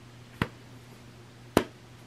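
Two sharp slaps of a hand against the body, about a second apart, over a faint steady hum.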